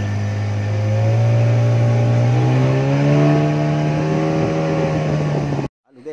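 Small river boat's engine running under way, rising in pitch over the first three seconds as it speeds up, then holding steady until it cuts off suddenly near the end.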